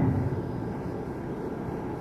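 Steady hiss and hall noise of a live concert recording, with no music or clear sounds standing out.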